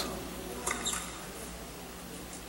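A tennis serve struck with a racket: a faint sharp pock about two thirds of a second in, then a second short knock just after, over a low steady hum of arena room tone.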